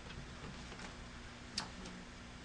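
Quiet room tone: a faint steady hum with one short click about one and a half seconds in.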